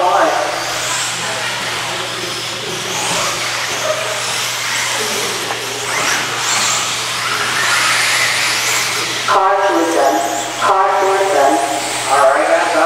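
Electric 4wd RC buggies racing, their motors whining up and down in pitch with tyre noise on the track surface as the cars pass. A man's voice takes over about nine seconds in.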